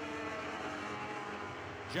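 Lightning sprint cars' 1000cc motorcycle engines running at speed on the dirt oval: a steady, high multi-tone engine drone that drifts slightly in pitch, the engines held in one gear with no shifts.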